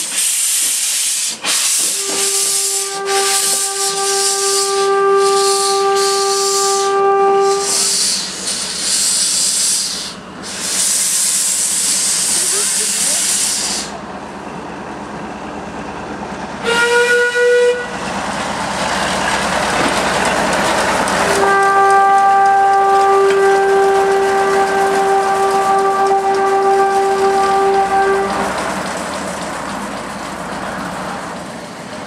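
Steam locomotive hissing loudly as it releases steam, with steam whistle blasts: one long steady blast of about six seconds, a short higher-pitched blast about seventeen seconds in, then another long blast of about seven seconds at the first pitch.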